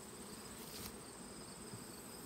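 Faint, steady buzzing of honeybees flying around an open hive, with a thin, steady high-pitched insect trill.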